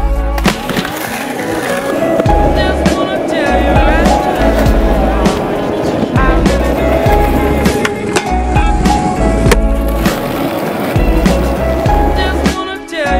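Skateboard wheels rolling on concrete, with sharp clacks of the board popping and landing, mixed over loud background music with a heavy, regular bass beat.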